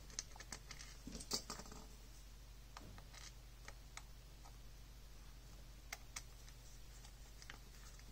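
Faint scattered clicks and light scrapes of a precision screwdriver and fingers working small screws into the black plastic housing of a Pentax Battery Pack LX, with a little cluster of clicks about a second in and single ticks after. A steady low hum runs underneath.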